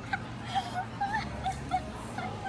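A girl's high-pitched giggling and squealing: short squeaky notes, several a second, over a low steady room hum.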